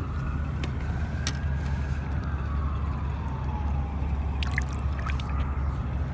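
An emergency vehicle's siren wailing, its pitch slowly rising and falling, over a steady low rumble with a few light clicks.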